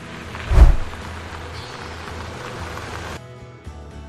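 Music and sound effects from an animated outro: a loud low boom with a whoosh about half a second in, then a steady hiss that cuts off suddenly just after three seconds.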